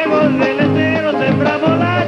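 Live Argentine chacarera: a man's singing voice over nylon-string guitar, with beats on a bombo legüero drum.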